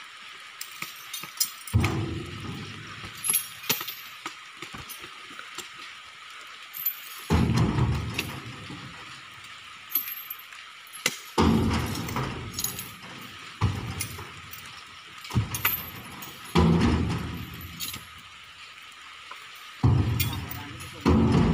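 Heavy rain hissing steadily, with repeated thuds and knocks of oil palm fruit bunches being thrown into a truck's bed, and several stretches of low rumbling.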